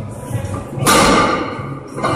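A sudden loud yell breaks out about a second into a heavy barbell deadlift and fades within about half a second, over steady background music.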